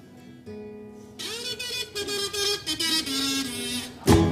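Acoustic guitars of a carnival comparsa playing the opening of the cuplés, starting softly and growing louder from about a second in.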